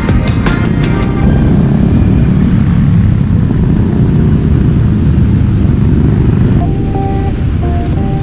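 Background music with a beat gives way about a second in to the low, steady rumble of motorcycles riding along. Near the end the music returns.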